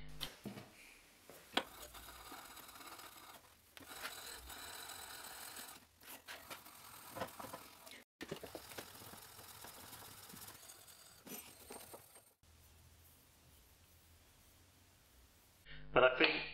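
Faint scraping and rubbing with small metal clicks as glue is cleaned off a block plane's metal lever cap, heard in several short segments joined by sudden cuts.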